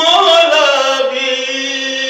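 A man's voice chanting a devotional recitation in a sung melody. It is one long held note that slides down in pitch over the first second and then holds steady.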